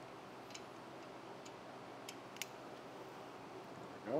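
A few faint, irregularly spaced metal ticks of hand tools and fasteners while the VANOS solenoids' E10 Torx bolts are being removed.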